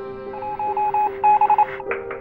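A run of short electronic beeps like phone keypad tones: a string of about six, then a quicker, louder cluster just after a second in, over soft sustained background music.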